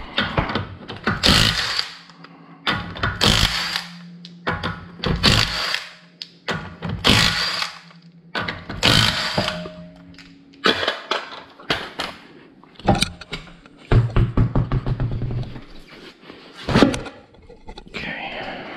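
Cordless impact wrench spinning off a car's lug nuts in five bursts about two seconds apart, one per nut. These are followed by scattered knocks and thuds as the wheel comes off the hub.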